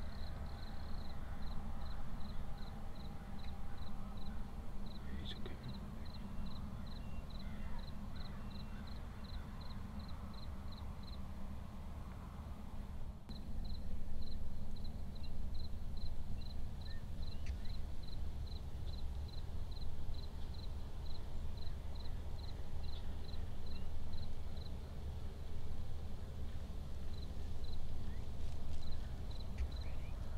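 Quiet evening field ambience: a steady run of short, high chirps, about three a second, with a brief pause near the middle, over a low steady rumble.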